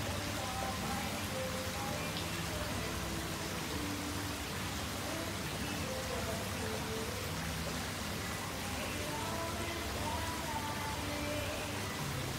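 Steady hiss of falling water, even and unbroken, with faint melodic tones over it.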